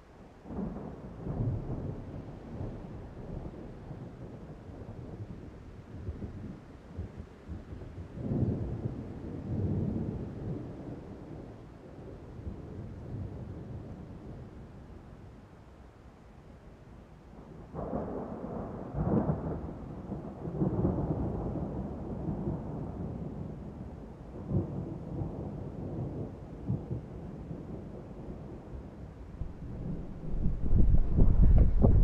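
Wind buffeting the microphone in irregular gusts, a deep rumbling noise that swells and fades, strongest about a second in, around eight to ten seconds in, and again from about eighteen seconds on.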